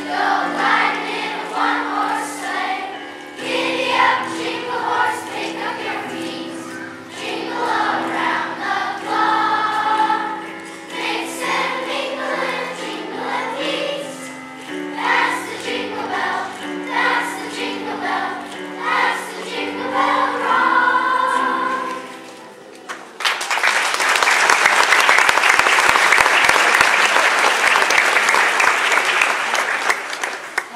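Children's choir singing a song with instrumental accompaniment; the song ends about three quarters of the way through and the audience breaks into loud applause for the rest.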